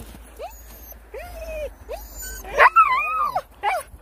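Siberian huskies in sled harness whining and yipping in short cries that rise and fall in pitch, with a louder, longer whine a little past halfway.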